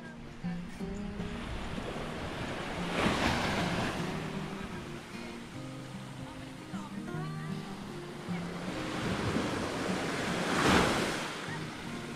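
Small waves washing onto a sandy shore, two of them swelling louder, about three seconds in and again near the end. Background music with low held notes plays underneath.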